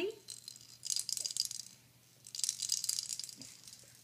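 Small hand-held toy shaken, rattling in two bursts of about a second each, a second apart.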